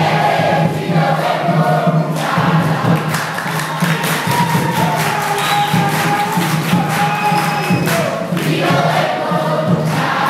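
A large congregation singing a praise song together, many voices in unison. A steady percussive beat runs through the middle of the song.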